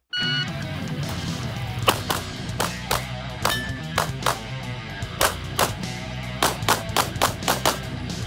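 A shot timer's short electronic start beep, then a pistol fired in quick pairs and strings of shots, about twenty in all from two seconds in, while the shooter runs a practical shooting stage. Rock guitar music plays under the shots.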